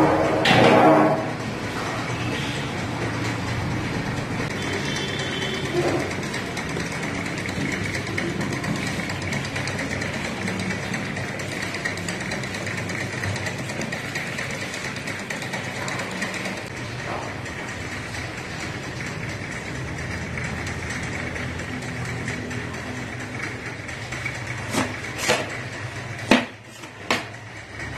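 Steady roaring background noise of a commercial kitchen. At the very start there is a loud burst of a wooden spatula stirring and scraping potato filling in a steel karahi, and near the end a few sharp chops of a knife on a wooden board.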